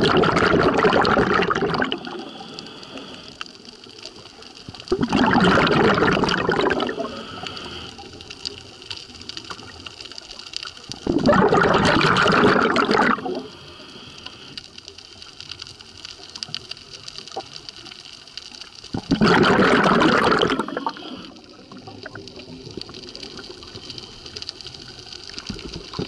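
A scuba diver's breathing heard underwater: exhaled bubbles gurgle out of the regulator in bursts of about two seconds, four times, with quieter stretches between the breaths.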